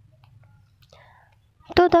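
A faint low hum with no other clear sound, then a voice starts speaking Bengali near the end.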